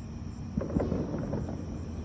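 A steady low outdoor hum with a few fixed low tones, and a short stretch of irregular rumbling noise from about half a second in to past the middle.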